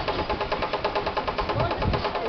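A machine running with a rapid, even mechanical clatter of about a dozen ticks a second, with voices in the background.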